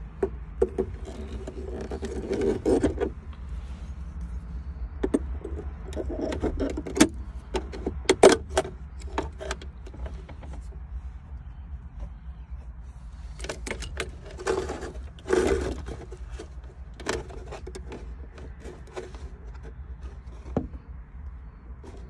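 Handling of a skid-steer cab's plastic switch panel and its wiring harness: scattered clicks, knocks and scrapes of plastic trim and connectors, in a few busier clusters, over a steady low rumble.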